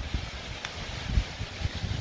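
Wind on the microphone, an uneven low rumble with irregular buffets, with a couple of faint clicks.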